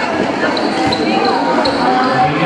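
Basketball game under way: a ball being dribbled on a concrete court amid the chatter and shouts of a crowd of spectators, with short high squeaks of court shoes now and then.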